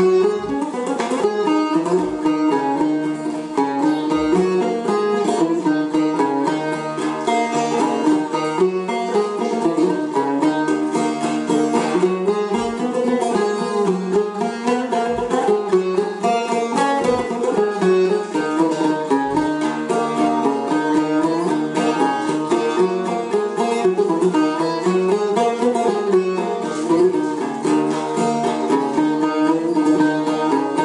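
Solo cümbüş (jumbus), a long-necked plucked lute with a metal bowl body and a drum-like head, played as a free improvisation. A fast, unbroken stream of picked notes with a melody that winds up and down.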